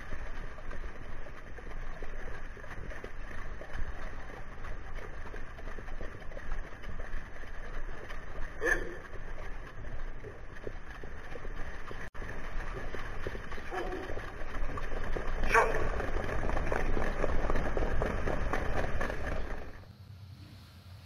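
Steady wind rumble on the microphone of a camera riding on a trotting sulky at racing speed, with a few short shouts from drivers about 9 and 15 seconds in.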